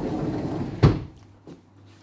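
A low rumbling handling noise, then a single sharp knock a little under a second in, like something set down on a hard surface.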